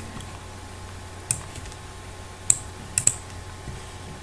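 Four sharp clicks of a computer's controls, the last two close together, over a low steady hum.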